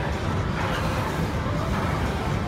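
Steady low rumble of gym background noise with no distinct event.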